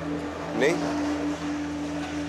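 A steady low hum of two held tones, with a man's short questioning "Ney?" over it about half a second in.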